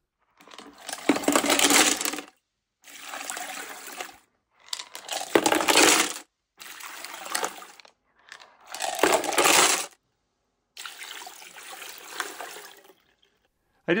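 Rocks and grey grit slurry being poured out of a small 3-pound rock-tumbler barrel into a plastic colander: the rocks clatter and the slurry splashes as the barrel is emptied after a coarse-grit grinding run. The pouring comes in about six separate bursts with short silent gaps between them, and each burst cuts off suddenly.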